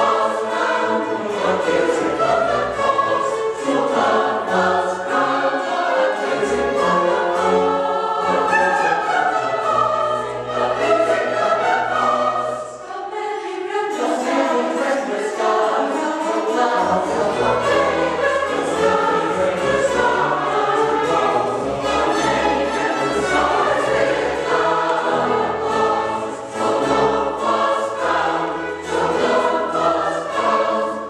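Mixed choir singing with string orchestra accompaniment, with a short break between phrases about halfway through before the singing resumes.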